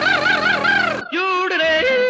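A singer yodeling over the song's music, the voice flipping up and down in quick arches. About a second in, the sound cuts abruptly to a different passage with a held, wavering sung note.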